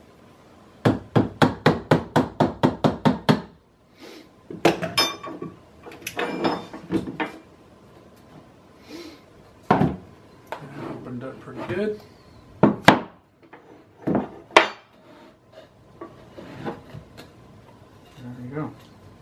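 A steel chisel struck with a piece of wood, a fast run of about a dozen knocks in under three seconds, then scattered single blows and the clatter of boards and tools, as the parting-plane boards are chiseled off a canopy mold.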